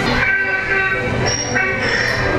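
Dark ride soundtrack playing through the ride's speakers: music with long held chord tones over a low rumble.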